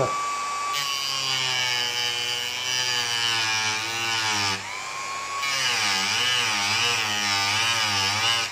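Dremel rotary tool with a small cut-off disc cutting a block of wood: a high motor whine that drops and wavers in pitch as the disc bites, over a hiss of cutting. About four and a half seconds in the disc briefly runs free at its steady pitch, then cuts again.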